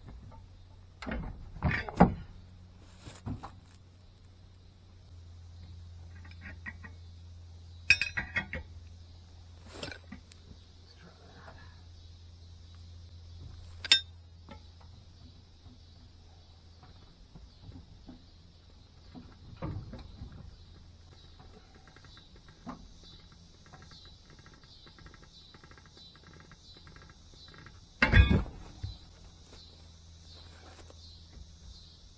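Scattered metallic clanks and thumps of heavy wrenches on a truck wheel's lug nut as a man stands and shifts his weight on them, with footsteps in dry grass; the loudest clanks come about two seconds in and near the end. The lug nut stays seized. Underneath is a steady low hum and a high insect drone.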